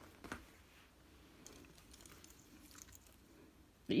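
Faint handling noises as small items such as a purse and a lanyard are picked up and moved: a few soft clicks and rustles, the clearest a tap just after the start.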